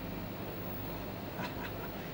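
Quiet, steady low hum and hiss of running broadcast equipment, with a brief faint sound about one and a half seconds in.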